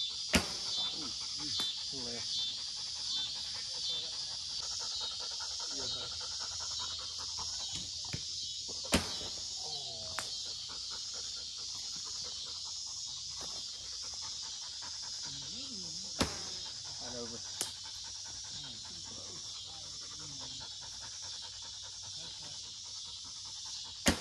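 Recurve bows shot at aerial targets: sharp snaps of the bowstring on release, one just after the start, two in the middle and one a little later, over a dog panting and a steady high-pitched hiss.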